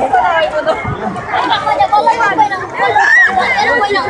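Chatter of several people's voices, talking and calling over one another.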